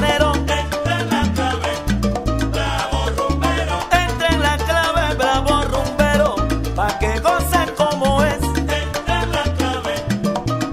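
Salsa music: a recorded track with a repeating bass tumbao, dense Latin percussion and melodic lines over it.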